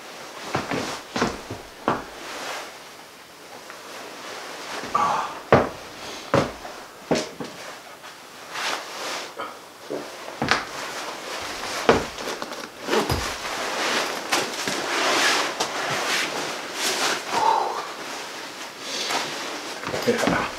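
Rustling of a heavy nylon parka and winter gear being taken off, with scattered knocks and clicks as mitts and a hat are hung on wall hooks.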